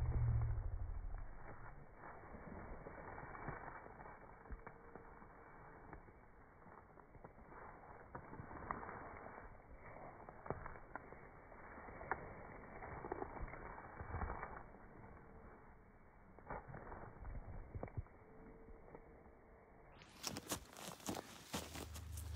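Faint, muffled footsteps and rustling through dry grass, with scattered small ticks and a low rumble in the first second.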